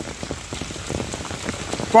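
Steady rain falling, with many individual drop hits close by.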